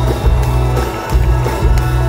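Live pop band playing over a loud arena sound system, with a heavy bass line and a regular drum beat and little singing.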